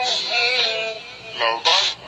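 A song sung in an electronically altered, synthetic-sounding voice over music, with held notes.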